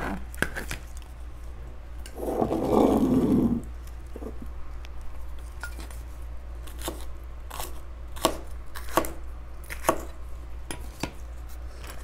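Knife tapping on a plastic cutting board as jalapeños are sliced, then scattered light clicks as the pieces are dropped into a glass jar. A louder rough noise lasts about a second and a half, starting about two seconds in.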